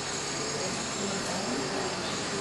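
Steady hiss of room tone, with faint murmured voices in the background.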